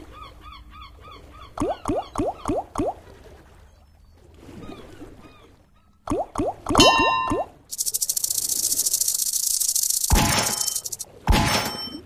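Sound effects from the Big Bass Splash video slot game. Two runs of quick rising tones play, about five in a row each time, as the reels stop. Then a loud, fast, high rattling buzz lasts about two and a half seconds as the fisherman symbol lands among the fish money symbols.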